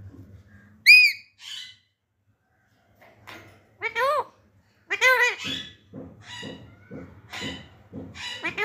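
Alexandrine parakeet chicks squawking with begging calls as they wait to be hand-fed: one sharp, high call about a second in, then a string of rising-and-falling squawks from about four seconds on.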